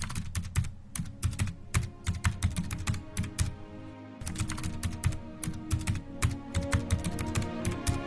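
Keyboard-typing sound effect: a fast, uneven run of key clicks, with a short pause a little past halfway. A low sustained music bed plays underneath.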